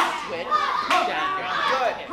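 Voices and chatter echoing in a large hall, with two sharp slaps about a second apart.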